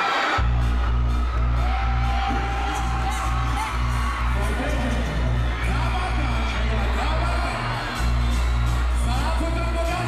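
Live dancehall music played loud over a concert sound system, its heavy bass beat kicking in about half a second in and dropping out briefly about three quarters of the way through, with a voice over the top.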